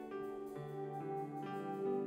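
Live band playing an instrumental passage led by guitars, with held notes changing in steps about every half second.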